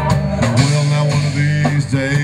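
Live band playing a country song in a short break between sung lines: guitar and drum kit over a steady bass line that changes note about half a second in.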